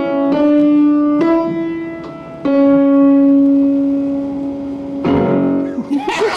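Acoustic piano played slowly: a few single melody notes, the last one held and left to ring for about two and a half seconds as it dies away.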